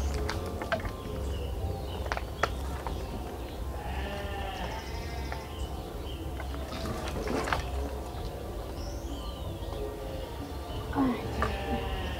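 Dry firewood sticks knocking and clattering as they are gathered from a pile, with an animal bleating about four seconds in and again about seven seconds in.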